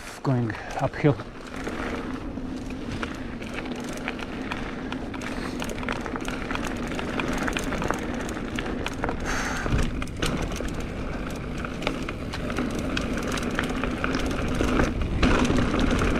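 Mountain bike rolling down a dirt and gravel forest trail: steady tyre rumble with a constant hum, peppered with small knocks and rattles from the bike over bumps, growing louder toward the end as speed picks up.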